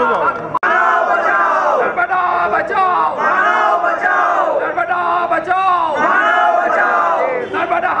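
A crowd of men shouting protest slogans together, loud and continuous, cutting out for an instant about half a second in.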